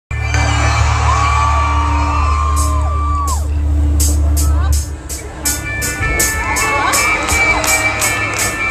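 Live rock band playing loudly through a festival PA, heard from within the crowd. A heavy sustained bass drops out about five seconds in, a steady cymbal beat enters about two and a half seconds in, and crowd voices whoop over the music.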